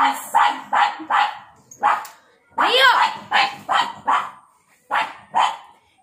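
Pug barking in runs of short barks, several in quick succession, with a brief pause near the middle.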